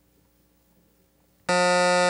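Near silence, then about one and a half seconds in a quiz-show buzzer sounds one loud, steady electronic tone: the signal that time is up for answering.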